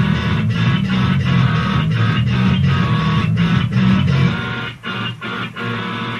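Visual kei rock band recording led by distorted electric guitar over bass and drums. About four seconds in, the bass drops away and the band plays in short, chopped stop-start hits.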